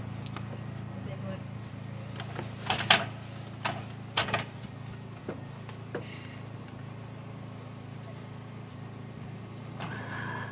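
Wooden blocks and board offcuts knocking against each other as they are set on the ground, with a few sharp knocks about three to four seconds in, the loudest near three seconds. A steady low hum runs underneath.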